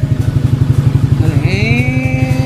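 Scooter engine idling at about 1,400 rpm with a steady, rapid low pulsing.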